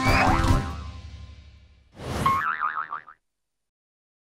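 The closing notes of a cartoon theme tune ringing out and fading, then about two seconds in a cartoon 'boing' sound effect with a fast wobbling pitch, lasting about a second.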